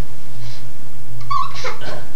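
A short, high squeal about one and a half seconds in, followed by a brief breathy rush, over a steady low hum.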